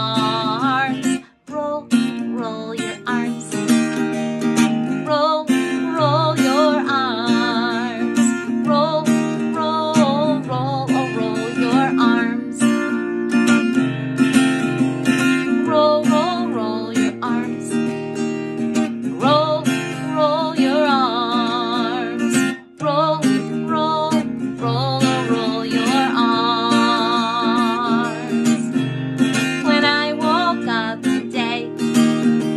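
Woman singing a children's action song while strumming an acoustic guitar, with brief breaks in the music about a second and a half in and again about three-quarters of the way through.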